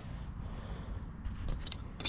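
Faint handling noise of a plastic license-plate light housing being turned over in the hands, with a few light clicks and scrapes about a second and a half in, over a low rumble.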